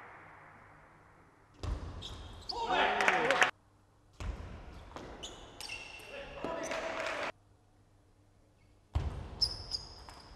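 Table tennis ball clicking off bats and the table during rallies in a large hall, in three separate bursts, with voices between the strokes. Music fades out at the start.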